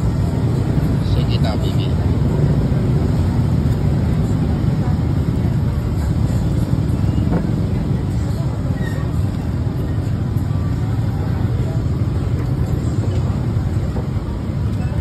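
Steady low rumble of road traffic, with voices in the background.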